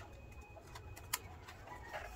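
Faint handling of a vinyl sticker as its backing paper is peeled off and it is pressed onto an aluminium laptop lid, with soft crackling and one sharp click about halfway.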